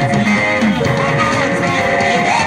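Live gospel band music: guitar and drum kit playing with a group of singers on microphones, steady and continuous.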